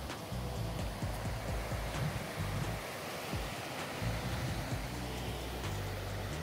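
Elbow River rapids rushing: a steady, even wash of white water, with background music underneath.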